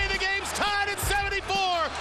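A radio play-by-play announcer yelling excitedly in several long, high, drawn-out shouts, right after calling a made game-tying shot. Background music with a steady low bass runs underneath.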